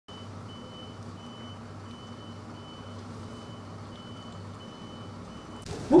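A high-pitched electronic beep repeating in pulses of about half a second with short, uneven gaps, over a low steady hum.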